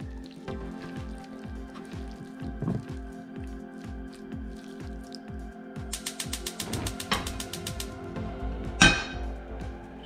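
Background music with a steady beat. About six seconds in, a gas range's spark igniter clicks rapidly for about a second. Near the end comes one loud clank as a metal frying pan is set down on the burner grate.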